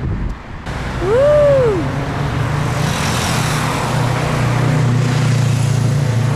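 Road traffic on a multi-lane city road: car and motorcycle engines running close by, with the noise of a vehicle swelling as it passes in the second half. About a second in, a brief rising-then-falling tone sounds over the traffic.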